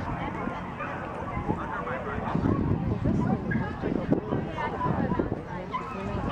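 Spectators chatting, with a dog barking among them.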